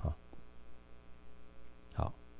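Steady low electrical mains hum, a set of even tones, from the lecture's microphone and sound system, with the end of a man's word at the start and a short breath near the end.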